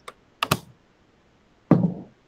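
Two quick, sharp clicks at the computer about half a second in, followed by a single short, duller knock near the end.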